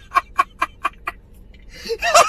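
A man laughing hard in quick, even bursts, about four or five a second. The laughter breaks off for under a second past the middle, then starts again louder near the end.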